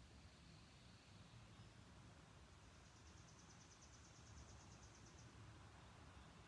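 Near silence: quiet room tone, with a faint, rapid, high-pitched trill lasting about two seconds in the middle.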